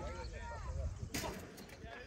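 Men talking, with a single sharp crack about a second in, an impact like a ball strike, right before a man swears. A low wind rumble runs under the voices in the first second.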